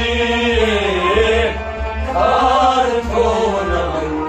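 Male voice singing a Kashmiri Sufi song in long, bending melodic lines, accompanied by harmonium and a bowed string instrument.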